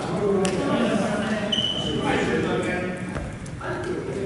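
Indistinct voices of several people echoing in a large gymnasium, with a sharp knock about half a second in and a brief steady high tone about a second and a half in.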